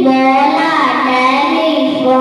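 A young girl singing into a handheld microphone, holding long notes that step and bend in pitch.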